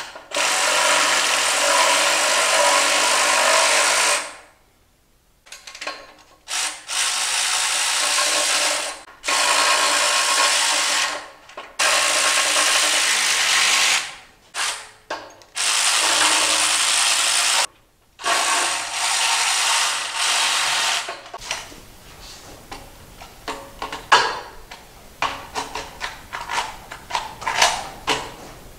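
A power drill driving bolts into an aluminium extrusion frame, in six runs of a few seconds each with short pauses between them. After that come scattered clicks and knocks of metal clamps being loosened and handled.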